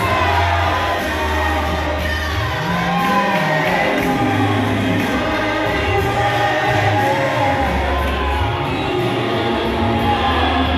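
A group of voices singing a gospel worship song together, with a loud bass line under them that moves in held steps.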